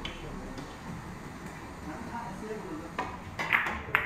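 Four-ball carom billiards shot: the cue tip strikes the ball and the hard carom balls click against each other, several sharp clicks in the last second, the loudest about three and a half seconds in.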